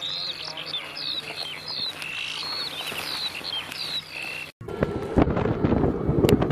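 Birds chirping and singing, many short whistled notes sliding up and down. About four and a half seconds in it cuts off abruptly and loud wind buffeting the microphone takes over.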